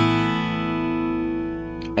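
Acoustic guitar in standard tuning, an open A suspended second (Asus2) chord ringing out and slowly fading.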